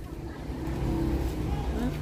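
Low, steady rumble of a vehicle engine in street traffic, with faint voices in the background.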